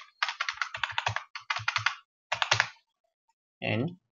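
Computer keyboard typing in quick bursts of keystrokes for about two and a half seconds, then stopping.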